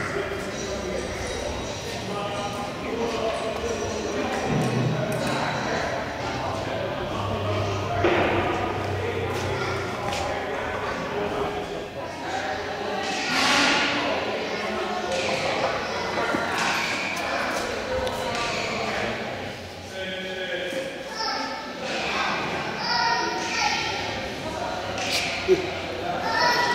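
Indistinct voices of other people talking in a large, echoing hall, with scattered thumps and one sharp knock near the end.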